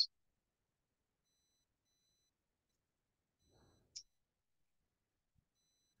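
Near silence in a pause of a video call, broken once by a faint short click about four seconds in.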